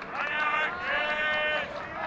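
A person's voice giving two drawn-out, steady-pitched calls, the second longer than the first.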